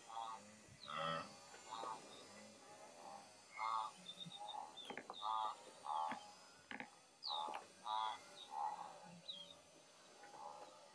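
A wild animal calling over and over, short pitched calls roughly once a second, with faint bird chirps high above them.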